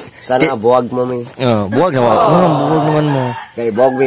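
A man's voice imitating a rooster crowing: several short rising-and-falling calls, then one long held note about halfway through.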